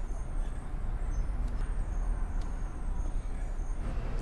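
Steady low background rumble, like room tone or distant traffic, with a few faint ticks.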